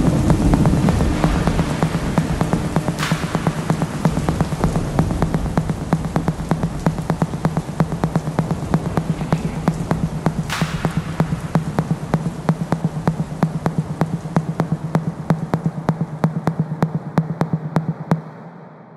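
Electronic music: a steady low drone under a fast, even train of clicks, about four a second, that quickens near the end. Two brief noise swooshes pass over it, one a few seconds in and one about halfway through.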